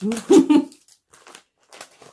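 A woman's strained, wordless vocal noise as she struggles with a stubborn package, then light crinkling and tearing of the packaging as she pulls at it.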